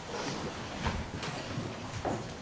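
Scattered footsteps and light knocks of people moving about, a few irregular taps over a low rumble.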